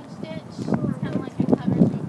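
Indistinct speech from a person nearby, with no sound other than the voice standing out.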